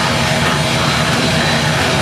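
Live thrash/death metal band playing loud and dense: heavily distorted guitars and bass over fast drumming, heard through a live-recording mix.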